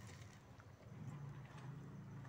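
Faint rustling and light taps of a hand scooping chopped saag greens out of a steel bowl into a clay pot. A low hum comes in about a second in.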